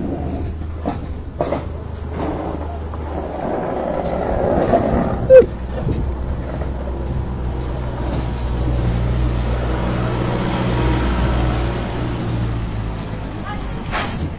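A heavy vehicle's engine running steadily with a low hum that grows stronger in the second half. One short, loud squeal falls in pitch about five seconds in.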